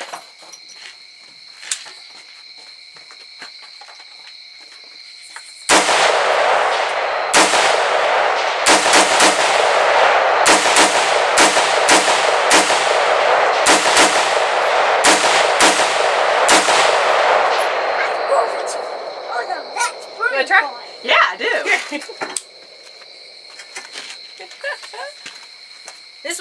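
Rifle gunfire: a quick string of a dozen or more shots, roughly two a second, starting suddenly about six seconds in. A loud continuous noise runs between the shots and fades out a few seconds after the last one. Before the shooting there is a steady high insect chirring.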